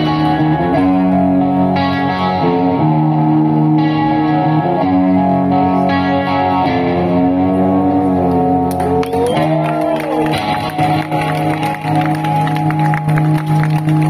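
Live rock band playing through a PA, with electric guitars holding chords that change every couple of seconds. A note bends up and back down about two-thirds of the way through, and sharp drum and cymbal hits come in more strongly from then on.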